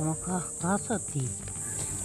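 A steady, high-pitched chirring of insects, with a woman's brief, unintelligible talk in about the first second over it.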